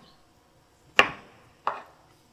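Metal ice cream scoop knocking on a butternut squash half on a wooden chopping board while scooping out the seeds: a sharp knock about a second in, then a lighter one shortly after.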